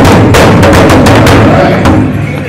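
Pow wow drum group striking a large hide-covered powwow drum with drumsticks, the beats loud and close.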